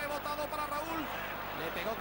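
A Spanish TV football commentator talking over the steady noise of a stadium crowd.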